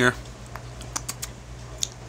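Several short clicks at irregular intervals over a steady low hum.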